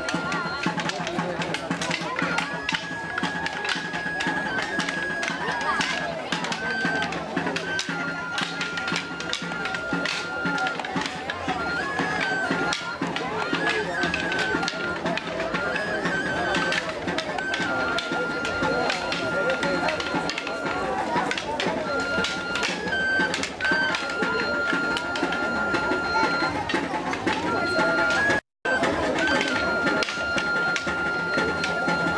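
Dance music from a high wind instrument, a flute or pipe, holding long notes of a simple tune that steps briefly up a note and back. Under it run crowd chatter and scattered knocks. The sound drops out for a moment near the end.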